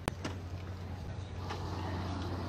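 A steady low hum under faint background noise, with a single sharp click right at the start and a couple of faint ticks.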